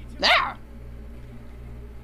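A single short, loud yelp-like cry from the cartoon's soundtrack about a quarter second in, quick and pitched, over a low steady hum.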